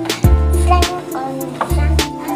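Background music with a beat: sharp drum hits over long, deep bass notes and a melody.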